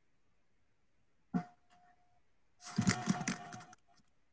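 Glitching audio over a video call with an unstable connection: a sharp click a little over a second in, then about a second of crackly, garbled noise, with a thin steady tone under each glitch.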